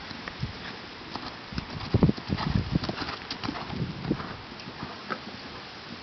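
Hoofbeats of a ridden horse on arena sand, an uneven run of dull thuds that is loudest about two seconds in and then fades as the horse moves away.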